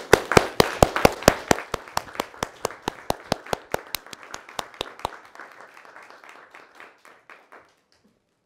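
A roomful of people applauding, with a few loud claps close by standing out over the rest. The applause starts strong and dies away over about seven seconds.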